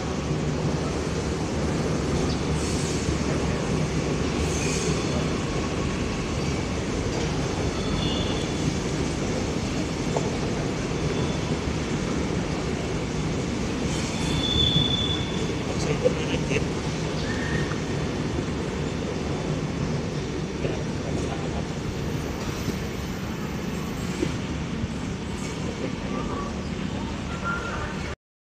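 Airport rail link electric train pulling out and running along the tracks: a steady rumble of wheels on rail. Brief high-pitched wheel squeals come about eight seconds in and more strongly around fourteen seconds.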